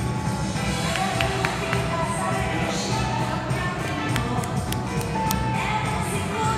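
Up-tempo quickstep ballroom music playing, with a few sharp taps heard over it.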